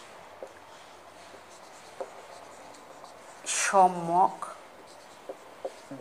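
Marker pen writing on a whiteboard: faint scratching with a few small taps of the pen tip. A little past halfway, a woman's voice draws out one word for about a second.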